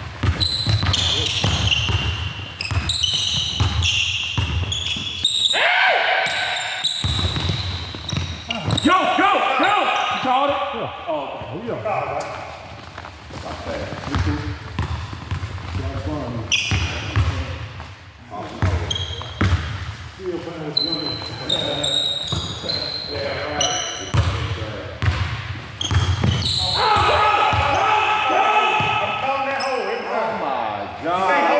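A basketball bouncing during a half-court street basketball game, with repeated sharp knocks throughout and players shouting.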